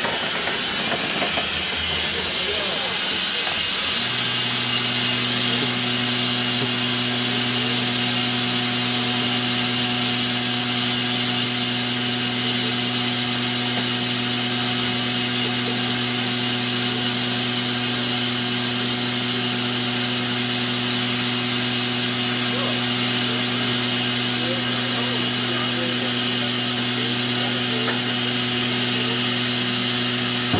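BR Standard Class 4MT 2-6-0 steam locomotive standing with steam hissing steadily. About four seconds in, a steady hum with overtones starts and carries on under the hiss.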